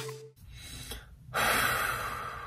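The last note of upbeat intro music cuts off right at the start, then after a short quiet a young woman lets out a loud, heavy breath through her mouth about a second and a half in, steadying herself on the edge of tears.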